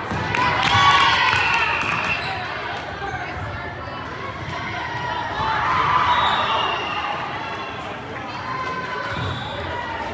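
Volleyball rally in a gymnasium: the ball is struck and bounces on the hardwood floor, while players and spectators shout, loudest about a second in and again around six seconds.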